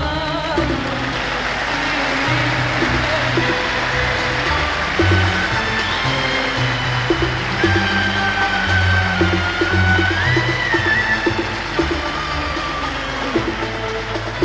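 Concert audience applauding and cheering while the Arabic orchestra plays on under it with low bass notes and short plucked notes. A held high note rises about ten seconds in.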